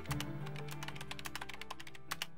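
Intro background music: sustained low notes under a quick, light clicking rhythm of about ten clicks a second.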